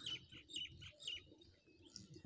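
Faint bird chirps: several short, high calls in the first second or so.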